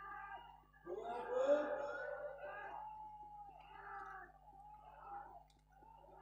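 High-pitched shouts and long calls from several people at once, loudest about a second in, then trailing off in shorter calls toward the end.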